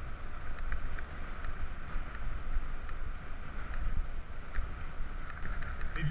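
Wind buffeting the microphone of a camera on a moving mountain bike, over the steady rumble of the tyres rolling on a dirt path, with a few faint light clicks.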